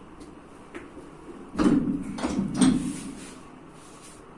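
Three short forceful straining exhalations, about half a second apart, from a strongman pulling an axle bar loaded to about 505 kg a few centimetres off the floor in a Sigmarsson-style partial deadlift.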